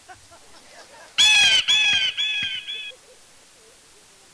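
A bird calling loudly: four harsh squawks in quick succession about a second in, each shorter and fainter than the last.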